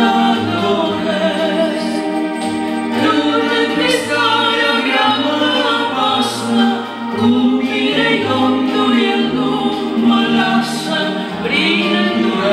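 A man and a woman singing a Romanian gospel song together into handheld microphones, in long held phrases over low sustained accompaniment notes.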